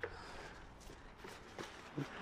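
Faint taps and rustles of a cardboard gift box and its ribbon being handled as the lid is lifted off, a few small ticks spread through the quiet.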